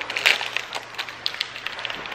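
Small foil blind-bag toy wrapper crinkling and tearing as it is pulled open by hand, a run of irregular crackles.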